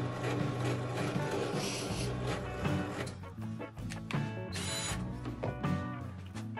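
Background music, with a drill press boring into a wooden block underneath it in the first half; the drilling noise stops about three seconds in.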